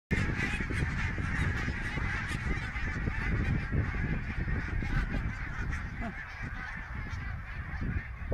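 A large flock of geese flying overhead, many birds honking at once in a continuous, overlapping chorus that thins slightly near the end.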